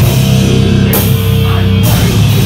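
Death metal band playing live and loud: distorted guitars over very fast drumming, with cymbal crashes about a second in and near the end.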